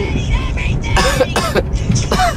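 A person coughing two or three times about a second in, over the steady low rumble of a car's cabin on the road. The coughs come from someone who is sick.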